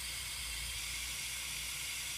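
Steady hiss of nitrogen escaping from a truck tyre's valve through the sampling chuck of a hand-held nitrogen analyser, as it draws a sample of the tyre gas.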